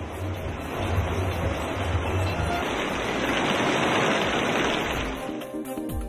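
Heavy rain falling, a steady hiss that swells and then fades out about five and a half seconds in, when a short burst of news-bulletin music begins.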